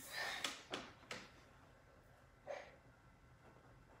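A short breathy exhale at the start, then two soft clicks about a second in and a brief faint sound a little later, over quiet room tone.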